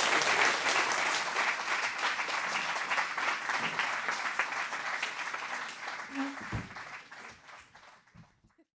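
Audience applauding, the clapping fading away steadily over several seconds.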